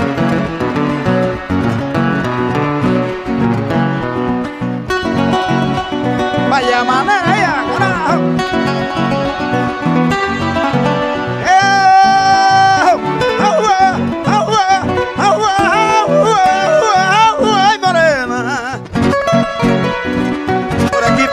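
Acoustic guitars playing an instrumental torrente between sung décimas: a steady strummed rhythm with a melodic lead line over it, and one long held note about halfway through.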